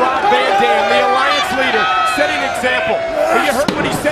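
Arena crowd noise with men's voices throughout, and a sharp bang near the end as a wrestler is driven into the steel ring steps.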